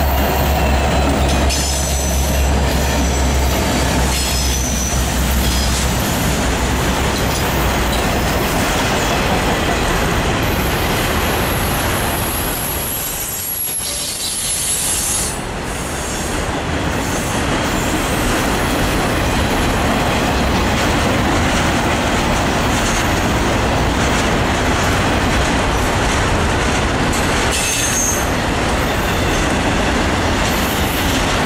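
Diesel freight locomotives passing close, their low engine drone fading after about six seconds. Then a long string of autorack freight cars rolls by with a steady wheel-on-rail roar and occasional high-pitched wheel squeals.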